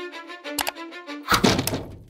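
A held string-like note of cartoon music with a short knock partway through, then a loud crash with a low rumble as a door is smashed in.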